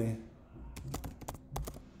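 Typing on a computer keyboard: a quick, uneven run of key clicks as a search phrase is entered.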